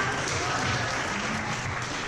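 Audience applauding, with voices mixed in.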